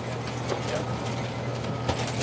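Steady low hum under outdoor background noise, with a single short knock near the end.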